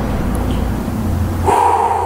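A man's heavy, strained breathing while he holds a side-lying leg raise, ending in a short vocal groan of effort about a second and a half in.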